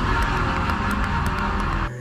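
A dense, noisy music or sound-effect sting from the TV segment's soundtrack, with a deep rumble underneath. It starts abruptly and cuts off sharply after just under two seconds.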